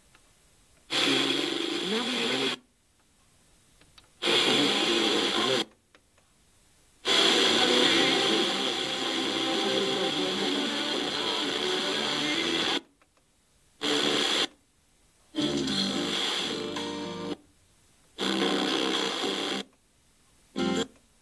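FM tuner receiving distant stations by sporadic-E propagation: six short bursts of broadcast music, each cutting in and out abruptly, with silent gaps between them as the tuner is stepped through the band and mutes between stations.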